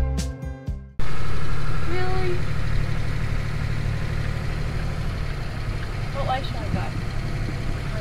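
A brief snatch of guitar music that cuts off about a second in, then a Toyota Land Cruiser 45 series engine running steadily as it drives, heard from inside the cab.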